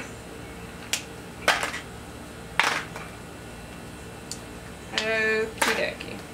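Plastic markers being handled at a table: a few sharp clicks and taps. A short, high, steady vocal sound comes about five seconds in.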